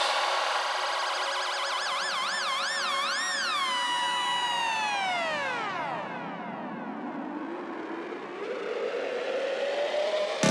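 Breakdown in a progressive psytrance track: the kick drum drops out and a synth tone wavers up and down, then glides steeply downward. Near the end a rising synth sweep builds.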